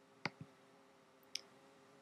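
Faint computer mouse clicks: a press-and-release click about a quarter second in, then a single lighter click about a second later, selecting an entry in a font list.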